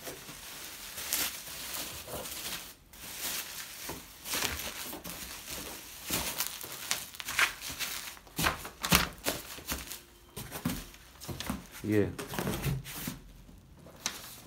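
Plastic bubble wrap crinkling and rustling in irregular bursts as it is pressed down into a cardboard box.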